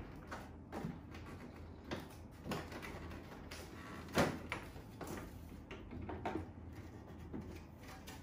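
The plastic front cover of a Samsung AX60R5080WD air purifier being unclipped and pulled off its body to reach the filters: a series of light plastic clicks and knocks, the loudest about four seconds in.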